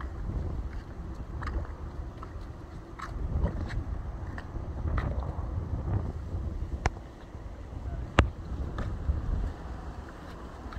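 Wind buffeting a phone microphone as a steady, uneven low rumble, with a couple of sharp clicks late on, the louder one a little after eight seconds in.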